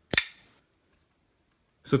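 Zero Tolerance 0055 titanium framelock knife flicked open on its bearing flipper, the blade locking out with one sharp snap that rings briefly.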